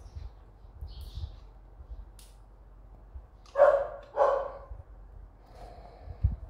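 A dog barking twice in quick succession, about halfway through, with faint clicks of plastic toys being handled.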